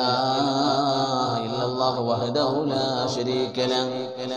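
A man's voice chanting in a melodic religious recitation, holding long, steady notes.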